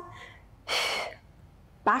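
A woman's short, forceful breath through the mouth, a little under a second in and about half a second long, the breathing of effort during a Pilates ab curl.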